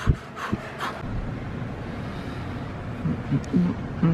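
Peloton exercise bike ridden hard: a few knocks in the first second, then a steady low whir.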